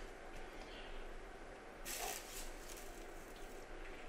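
Faint kitchen handling noise as a grilled avocado half is lifted off a metal baking tray, with a soft rustling scrape from about two seconds in lasting a little over a second.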